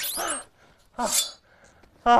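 A man's two short breathless cries or gasps, about a second apart, after being caught in a chase, with a quick falling high swish right at the start.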